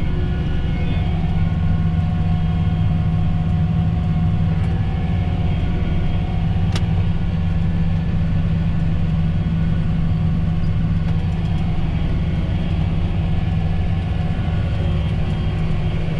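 John Deere tractor's engine running steadily under load while pulling a seed drill, heard from inside the cab as an even low drone. A single brief click comes near the middle.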